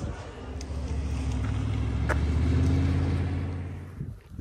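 A car running, a steady low engine and road hum that swells past the middle and fades away near the end, with a couple of light clicks.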